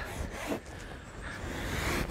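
Outdoor background noise with an uneven low rumble, typical of wind buffeting the microphone.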